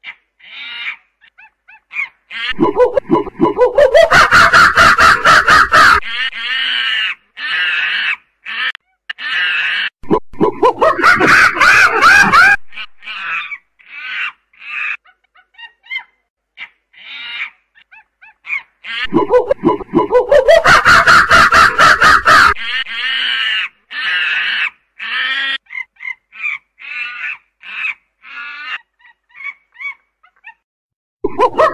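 Primate calls: short hoots and barks, with two series that climb in pitch and break into loud screaming, and another loud burst of screams in between.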